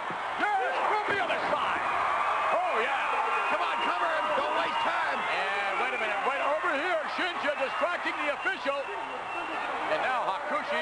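Men's voices talking throughout over arena crowd noise, with a thud of a body landing on the wrestling ring mat.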